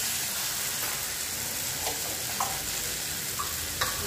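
Peas and onion-tomato masala sizzling in a kadai while a metal spatula stirs through them, with a few short scrapes of the spatula against the pan.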